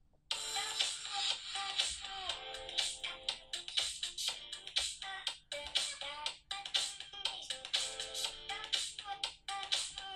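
A song with singing played at medium volume through the Sony Xperia Z smartphone's small built-in speaker, starting about a third of a second in. It sounds thin, with little bass, and fairly quiet.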